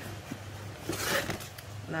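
Cardboard packaging rustling and scraping as a box is opened by hand, with a brief louder scrape about a second in.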